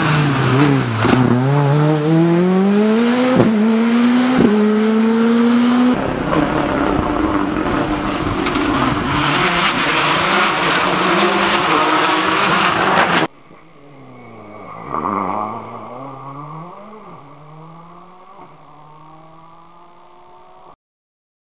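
Rally cars at speed on a wet stage: an engine revving hard up through the gears with quick shifts, then a second loud stretch of engine and tyre noise. About 13 seconds in the sound drops suddenly to a quieter car passing by, its pitch falling as it goes away.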